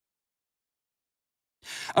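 Dead silence, then near the end a narrator's audible intake of breath just before he speaks again.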